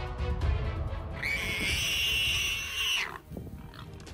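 Background music, then, just over a second in, a high animal squeal that holds steady for nearly two seconds and cuts off.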